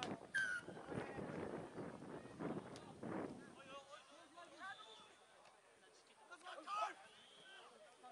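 Voices of spectators and players at a rugby league game, calling out and talking over one another at a distance, with louder shouts just after the start and again near seven seconds.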